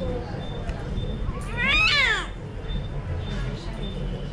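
A newborn baby gives one short cry about a second and a half in, rising and then falling in pitch.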